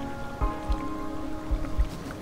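Background music: sustained chords over a soft low beat, with the chord changing about half a second in.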